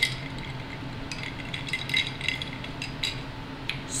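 A scatter of light glassy clinks from a glass jar of iced coffee as the straw and ice knock against the glass while she sips and stirs.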